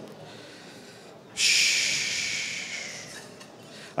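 A breath blown out close to a podium microphone: a breathy hiss that starts suddenly about a second and a half in and fades away over about two seconds.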